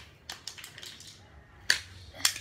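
Handling noise: a few light clicks and one sharp clack about 1.7 s in, as a die-cast toy truck and a plastic toy track are picked up and set down on a hard tile floor.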